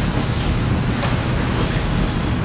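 Steady rushing noise, strongest in the low range, with no speech.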